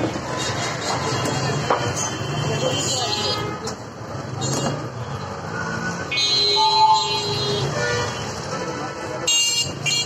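Busy street-market ambience: many people talking at once, with traffic and occasional vehicle horns.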